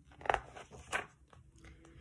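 A paper picture book being handled between pages: two short rustles of paper, the first a little after the start and the second about a second in, with a few faint ticks after.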